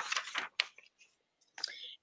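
A speaker's voice trailing off softly, then a short pause and a quick breath just before speaking again.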